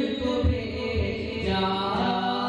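A man singing a naat, a devotional Urdu song, unaccompanied into a microphone, his voice carried over loudspeakers. There are low thuds under the voice in the first second or so, and about halfway through he moves into a long held note.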